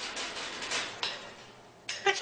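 Cockatoo rustling and scraping about in its wire cage: a scratchy noise with quick small clicks that slowly fades away.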